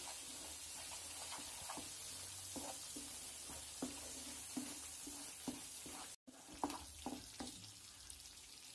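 Thick onion-tomato masala sizzling in a frying pan while a wooden spatula stirs it, with short scraping strokes against the pan about twice a second. The sound breaks off for a moment about six seconds in.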